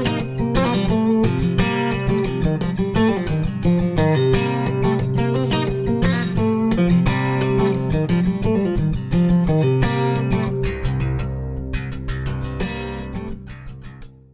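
Background music on acoustic guitar, picked and strummed, fading out near the end.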